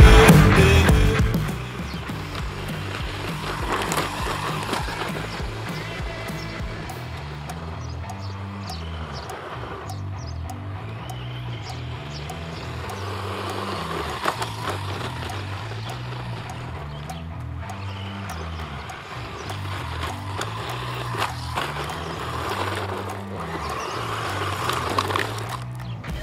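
Loud rock music fades out in the first two seconds, leaving quieter background music with a repeating bass line. Underneath, a 1/10-scale RC truck with a 540 brushed motor drives on loose gravel, its tyres rolling and crunching and its noise rising and falling as it passes.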